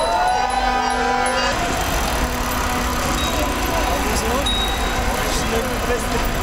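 Steady wind noise on the microphone of a moving bicycle, mixed with city street noise and voices. A drawn-out rising tone sounds through the first second and a half.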